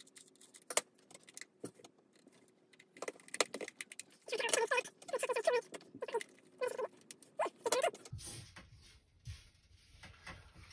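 Small clicks, taps and rattles of a battery LED lamp's painted housing, screws and a precision screwdriver being handled during reassembly, with a busier run of sounds about halfway through.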